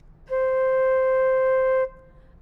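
Flute playing a single held C note, starting a moment in and stopping shortly before the end, one steady pitch throughout.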